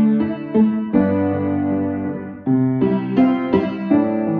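Piano playing the chordal accompaniment of a children's song, with bass and chords struck about every half second and left to ring.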